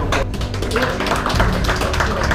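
A dense, irregular clatter of sharp claps and taps from a team of players in a small room, over background music with a steady low drone.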